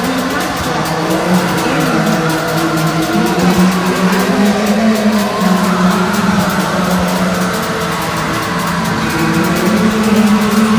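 Raw, lo-fi black metal recording: heavily distorted guitars sustaining a riff over fast drumming, a dense, steady, loud wall of sound.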